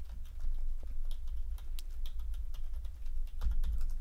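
Typing on a computer keyboard: a quick, uneven run of key clicks as a web address is entered.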